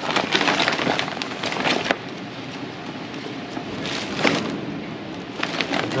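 Crinkling and rustling of a metallic gift bag and other wrappings as items are dug through in a fabric bin, with small knocks among them; busiest in the first two seconds and again about four seconds in.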